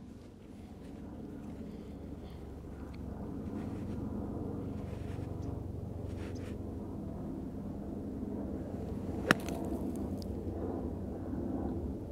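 A wedge striking soft bunker sand once, about nine seconds in, as a single sharp hit: a greenside splash shot taken about two inches behind the ball. A steady low outdoor rumble runs underneath.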